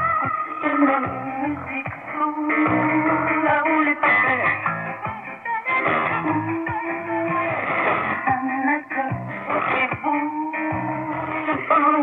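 A song with guitar, received as a shortwave AM broadcast and played through a portable receiver's speaker.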